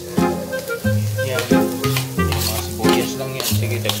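Diced carrots and spring onions sizzling in a wok as they are stirred and more vegetables are scraped in from a plate with a metal spatula, under background music with a rhythmic bass line.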